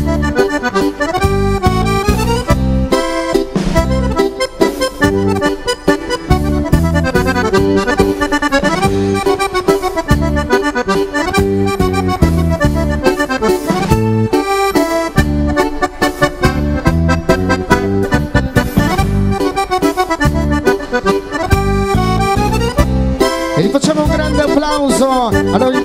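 Two piano accordions playing a lively tune together, quick runs of notes over a steady drum beat and pulsing bass.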